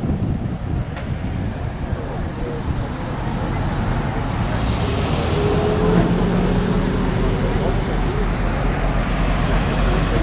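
Wind buffeting the microphone over steady road-traffic noise, with a faint steady hum, like a running engine, coming in about halfway through and fading before the end.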